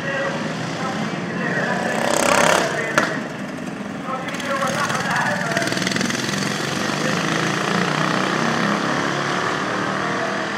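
Racing ride-on lawn mower engines running past, with a loud rush about two seconds in and a sharp knock a moment later, then a steady engine drone whose pitch wavers.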